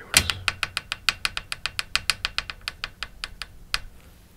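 Rapid light tapping: a quick, even run of sharp clicks, about seven a second, that stops shortly before the end.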